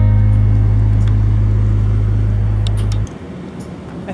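Background music ending on a long held low chord at an even level, cut off abruptly about three seconds in. Faint outdoor background noise remains after it.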